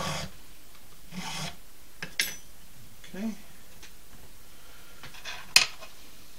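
Small file rasping on a cow-bone fish hook blank, a few short strokes, while the front is evened up and tapered. Near the end a sharp, loud clack as the steel file is set down on the wooden board.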